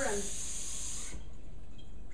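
Water running from a kitchen tap as a steady hiss, shut off suddenly about a second in.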